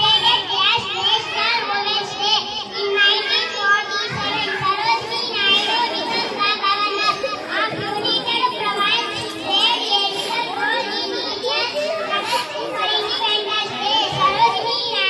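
Many young children's voices talking and calling out at once: a steady, continuous hubbub of children's chatter.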